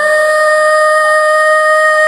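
A woman singing one long, steady high note, holding the last syllable of "cinta" in a slow pop ballad.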